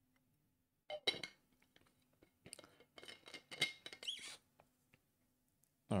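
A drink bottle being handled and put away: a couple of sharp clinks about a second in, then a run of small clicks and taps with a brief squeak around three to four seconds in.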